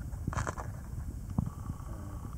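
Handling noise as a small capped plastic tube, a cut-down pen barrel used as a sewing kit, is opened by hand: a brief scratchy rustle, then a sharp click about one and a half seconds in, over a low steady rumble.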